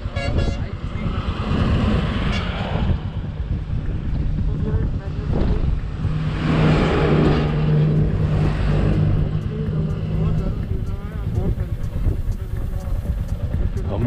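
Strong wind buffeting the microphone, with a heavy truck passing about six seconds in, its engine a steady low drone that swells and then fades over a few seconds.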